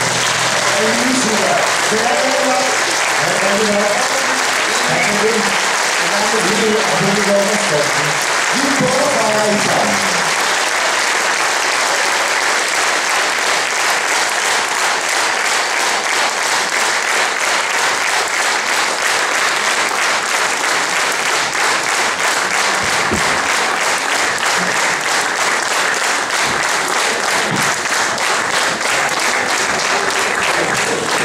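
Audience applauding steadily after the final song of a concert, with voices over it during the first ten seconds.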